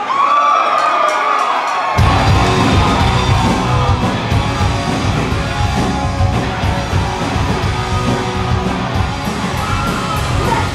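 Punk rock band kicking into a song live: a brief high held sound with no low end, then drums, bass and distorted guitars come in together about two seconds in and keep playing loud.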